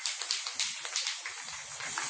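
Aerosol spray paint can spraying in one steady hiss.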